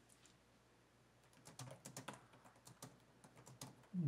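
Faint, irregular clicking of typing on a laptop keyboard, starting a little over a second in, in an otherwise near-silent room.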